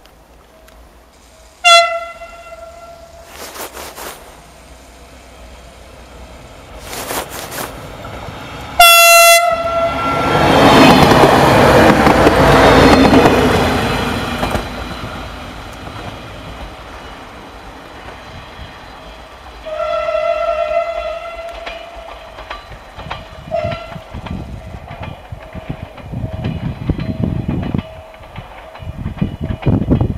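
Passenger train sounding its horn in short single-tone blasts, about two seconds in, about nine seconds in (the loudest) and again about twenty seconds in. Between the second and third blasts it passes close by with a loud rush of wheel and running noise that fades over several seconds. Near the end there is a rapid clatter of wheels over rail joints.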